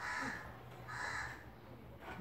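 A bird calling outdoors: two short, harsh calls about a second apart.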